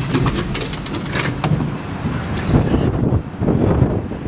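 Wind buffeting the microphone outdoors, a rough, gusting rumble, with a few clicks from the glass door being pushed open.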